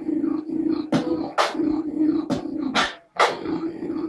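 Solo beatboxing: a sustained low bass tone held by the voice, broken by sharp snare-like hits about every half second. The sound stops briefly about three seconds in, then resumes with a hit.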